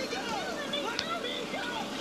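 Several voices shouting and squealing over one another without clear words, heard from a television speaker over a steady hiss. A single sharp click comes about a second in.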